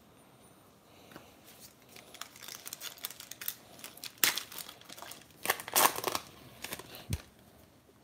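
Crinkling and rustling handling noise as gloved hands sort through a stack of chrome football trading cards and their wrapping. It comes in scattered crisp crackles, loudest about four seconds in and again around six seconds.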